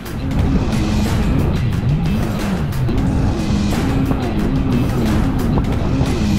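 Kawasaki 750 SXi Pro stand-up jet ski's two-stroke twin engine running at speed on rough water, its pitch rising and falling again and again. Background music plays over it.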